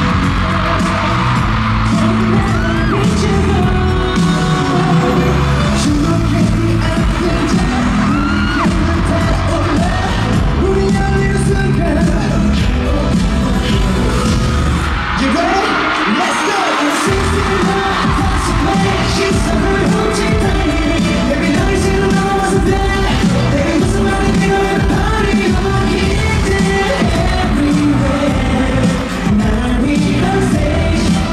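Loud live pop music with singing, played over an arena sound system and recorded from the audience. It has a steady driving beat, and the bass cuts out for about two seconds just past the middle before coming back in.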